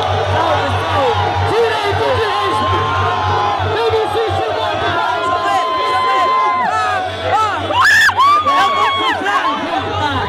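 Crowd of spectators cheering, whooping and shouting over a hip-hop beat, with many voices overlapping and a burst of high yells about eight seconds in.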